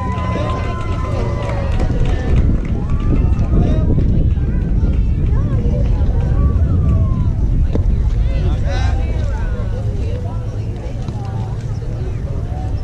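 Indistinct voices of players and spectators chattering and calling out, over a steady low rumble of wind on the microphone.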